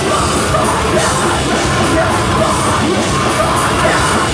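A metalcore band playing live: loud, dense distorted guitars and drums under yelled vocals.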